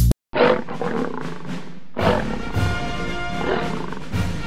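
A lion roar begins just after a brief silence and swells again a few times. Theme music comes in about halfway through.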